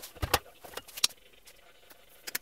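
A few sharp knocks and clicks of objects being handled: a quick double knock about a quarter second in, then a single sharp click about a second in.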